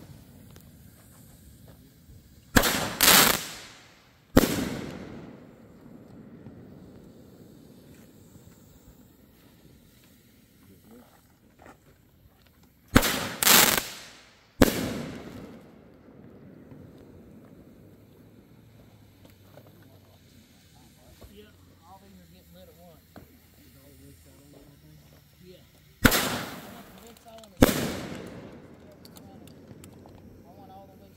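Aerial fireworks bursting overhead: three clusters of sharp bangs, two or three in each, about ten seconds apart, every bang trailing off in a rolling echo.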